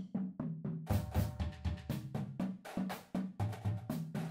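Drum key working the tension rods of a marching tenor drum, a quick run of metal clicks and knocks with the drum shells ringing briefly, as the lugs are detuned in a star pattern to loosen the head.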